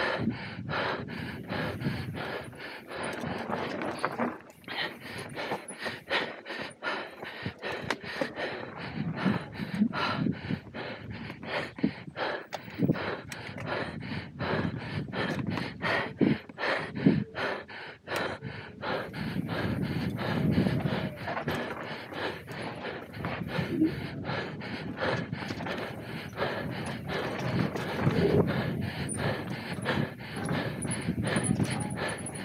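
Mountain biker panting hard while racing downhill, over the constant rattle and knocking of the bike and rumble of the tyres on a bumpy dirt trail.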